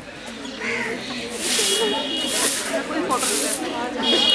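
Bundle broom sweeping packed-earth ground in swishing strokes, about three of them, starting about a second and a half in.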